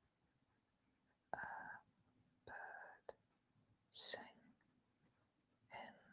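Soft whispered speech: a woman whispering words under her breath in four short phrases, with near silence between them.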